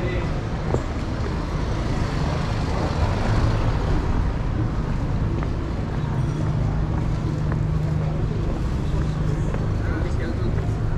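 Steady city street traffic noise, heaviest in the low end. A low steady hum stands out for a few seconds from about six seconds in.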